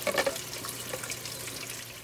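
Water from the Tower Garden's pump outlet bubbling up and splashing back into the nutrient reservoir, with a hand splashing in the water at the start; the sound fades out toward the end.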